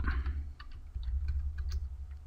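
A few scattered keystrokes on a computer keyboard, over a low steady hum.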